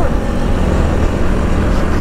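Motorcycle under way on a road: a steady rush of wind on the microphone with the engine running underneath.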